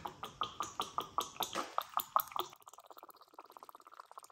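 Thin, watery shellac French polish poured from a bottle into a plastic cup: a quick run of irregular splashy ticks, then about halfway through a fainter, faster, even trickle as the thin stream runs in.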